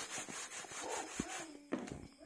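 Hands rolling dough logs in breadcrumbs against a plastic-lined basin: quick, repeated rustling strokes that stop about a second and a half in.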